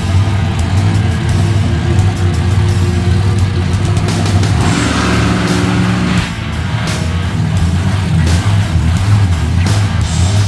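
Rock music playing over the steady running of a monster truck's engine as the truck rolls slowly toward the camera.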